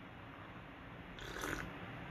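A person sipping tea from a cup: one short, airy slurp partway through, over faint room tone.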